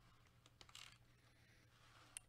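Near silence: room tone with a low steady hum, and a few faint short clicks and a soft paper rustle a little over half a second in as the poster is handled.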